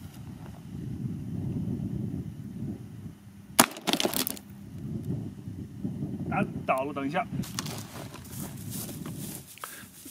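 A single sharp 5.56 NATO rifle shot, an M193 round fired from an AR-style rifle, about three and a half seconds in, followed by a brief echo.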